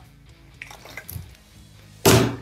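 Faint sloshing of water inside a half-filled plastic water bottle as it is moved on its side across a tabletop, with a few soft short sounds around the middle.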